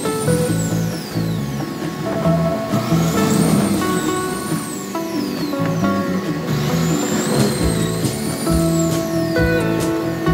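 Background music over an electric Kreg pocket-hole machine boring pocket holes in cherry: its motor rises in pitch, holds briefly, then winds down, twice.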